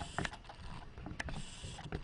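A few faint, scattered clicks and knocks of handling noise over a low hiss.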